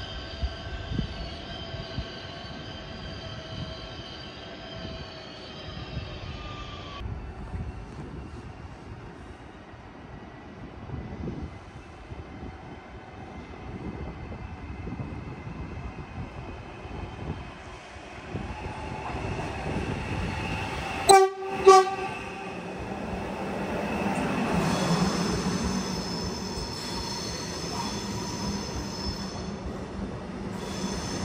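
Electric trains at a station platform: a steady electric whine that stops abruptly about seven seconds in. Then two short, loud train-horn blasts about two-thirds of the way through. Near the end, an FS ETR 521 Rock electric train pulls in alongside with a whining motor tone over a low rumble.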